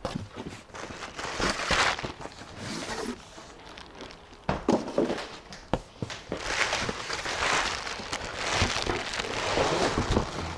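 Packing being pulled from a cardboard guitar shipping box: cardboard flaps and plastic bubble wrap rustling and crinkling in two long spells, with a few sharp knocks of handling in between.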